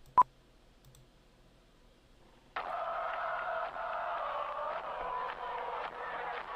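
A single sharp click, then near quiet. About two and a half seconds in, the intro of a rap cypher beat starts abruptly, a dense hazy sound like a cheering crowd, heard as played back from the video.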